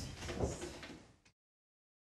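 Faint knocks and low thuds in a room, then the sound cuts off abruptly just over a second in.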